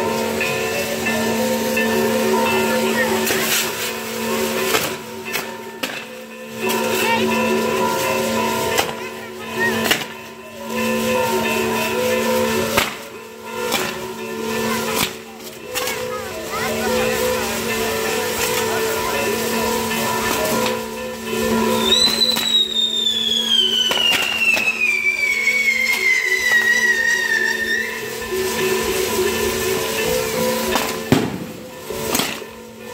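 Fireworks castle burning: spark fountains hissing in surges of several seconds with short breaks, over steady music. About two-thirds of the way through, a whistling firework lets out one long whistle falling in pitch for about six seconds.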